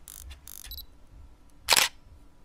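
Camera shutter sound effect: a few quieter mechanical clicks in the first second, then one loud, short shutter snap near the end.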